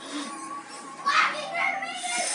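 A child's voice, with a brief high rising cry about a second in.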